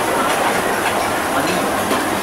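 Busy restaurant kitchen noise: a loud, steady rushing din with rattling clatter.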